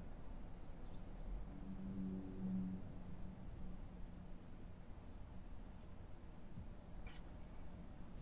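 Quiet room with a man drinking beer from a glass, including a faint low hum about two seconds in. Near the end there is one light knock as the glass is set down on a wooden table.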